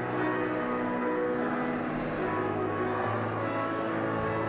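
Instrumental music of held, sustained chords, the chord changing a little after two seconds in and again about three seconds in.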